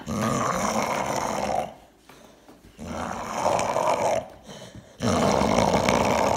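An American bully dog growling in play with a plush toy in its mouth: three drawn-out low growls with short pauses between.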